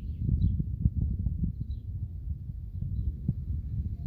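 Distant thunder rumbling, swelling in the first second and rolling on with crackles, with a few faint bird chirps.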